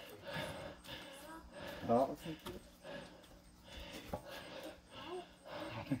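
A hush: a few faint, scattered spoken words, the loudest about two seconds in, over a faint steady hum.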